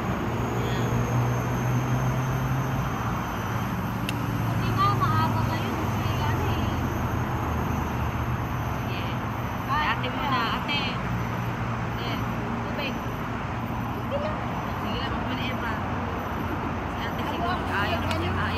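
Steady low hum of city traffic, with people talking quietly over it.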